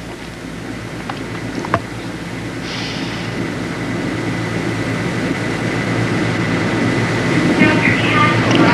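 Steady low electrical hum and hiss from an old analogue video recording, slowly growing louder. Two faint clicks come about a second and a second and three-quarters in.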